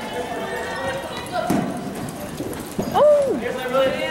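Hoofbeats of several polo ponies moving on the dirt floor of an indoor arena, with spectators' voices in the background. About three seconds in comes a short call that rises then falls, the loudest moment.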